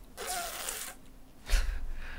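A man's short, forceful breathy exhale, like a hissing whoosh, followed about a second and a half in by a dull low thump.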